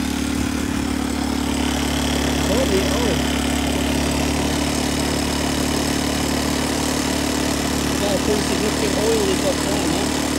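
Talon 150 cc buggy engine idling steadily.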